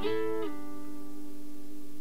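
Clean electric guitar, a Strat-style solid-body, playing a Motown-style R&B double stop of two strings together. The pair of notes drops to a lower position about half a second in, then is held and rings out.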